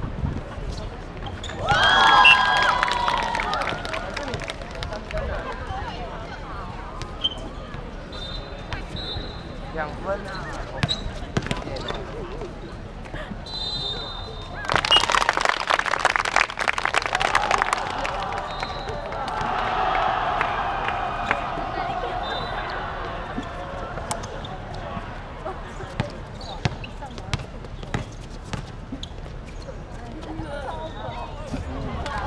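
Outdoor basketball game: a basketball bouncing on the hard court with short sneaker squeaks, and players and onlookers shouting, loudest about two seconds in. About halfway through comes a few seconds of clapping.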